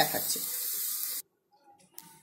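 Strips of bitter gourd and bottle gourd peel sizzling in oil in a hot wok while a spatula stirs them, with the gas just turned off. The sizzle cuts off abruptly a little over a second in.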